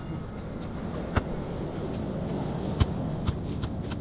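A basketball bouncing on an outdoor asphalt court, heard as a few sharp, irregularly spaced thuds over steady outdoor background noise.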